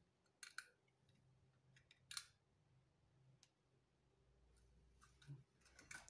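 Near silence with a few faint clicks and taps: small plastic model railway wagons being handled and set into their box tray.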